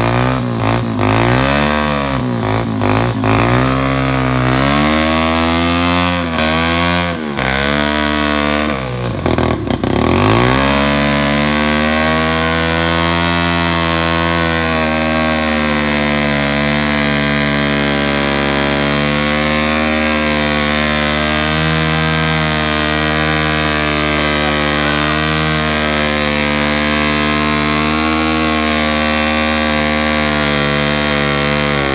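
Small pit bike engine revved up and down several times, then held at high revs for about twenty seconds while its rear tyre spins against the ute tray in a burnout.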